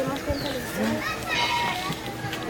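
Children's voices chattering and calling out, several at once, none of it clear speech.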